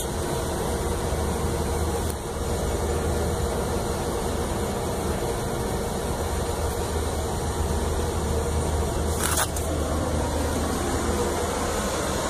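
Rooftop air-conditioning unit running: a steady mechanical noise with a constant low hum. A brief sharp noise about nine seconds in.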